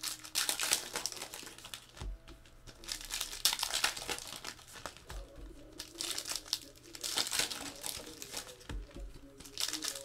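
Plastic wrapping on a box of trading cards crinkling and tearing by hand, in several bursts with short pauses between them.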